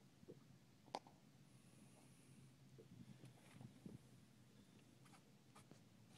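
Near silence: a faint low hum with one sharp click about a second in and a few soft clicks near the end.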